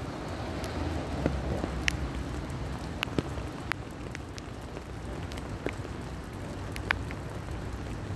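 Steady rain falling, with a few louder single drops ticking at irregular moments.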